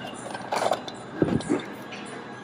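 Mattel Jurassic World Rowdy Roars Velociraptor 'Beta' toy set off through its box: its geared mechanism clicking as the head moves, with a short growl about a second in.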